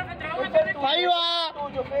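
Several voices shouting over one another: encouragement and instructions called out during a grappling fight, with one drawn-out, higher shout about a second in.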